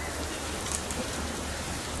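Smouldering bamboo fire: a steady hiss with a few faint crackling pops.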